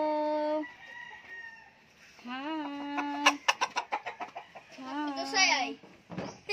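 Gamecock roosters crowing three times: one crow ending just after the start, another about two seconds in and a third near the end, each rising and then held on a long steady note. A quick run of sharp clicks follows the second crow.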